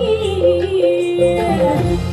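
Music playing: a song with a held, gliding vocal or melody line over a sustained bass.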